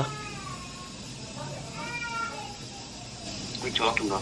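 A faint animal call heard twice: the first falls in pitch over about a second, the second, about two seconds in, rises and then falls.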